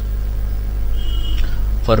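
A steady low hum, with a brief faint high tone about a second in; a man's voice starts speaking again near the end.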